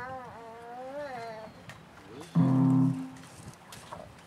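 A high, wavering voice in the first second or so, then about two and a half seconds in a single electric guitar chord through a small amplifier rings for about half a second and is cut off; the chord is the loudest sound.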